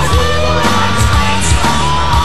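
Hard rock song with electric guitar, bass and drums playing at a steady pace.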